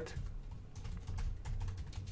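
Typing on a computer keyboard: a quick, uneven run of key clicks over a low steady hum.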